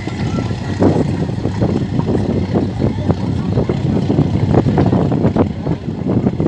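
SNSM all-weather lifeboat SNS 097's diesel engines running steadily as it passes close by under way, a continuous low rumble mixed with the wash of its wake.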